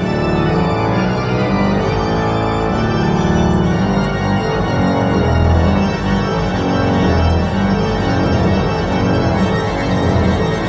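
Aeolian-Skinner pipe organ played at full power: heavy pedal reed stops hold deep bass notes played by the feet, changing every second or so, while quick figurations run above them on the manuals.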